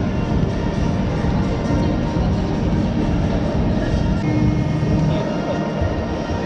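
Background music, fairly loud and steady.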